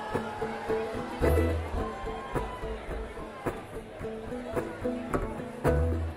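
Bluegrass string band noodling quietly between songs: scattered plucked notes and held tones on mandolin, acoustic guitar and dobro, with two upright bass notes, about a second in and near the end.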